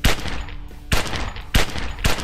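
Three loud gunshots in a film scene, the first at the start, then one about a second in and one half a second later, each with a short ringing tail.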